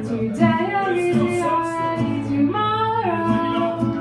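A live solo singer with a strummed acoustic guitar: the voice holds long notes and slides between them over the chords.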